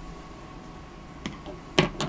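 Sharp, small clicks from the inking marker being handled and taken away from the page: a faint click, a smaller one, then a louder one near the end.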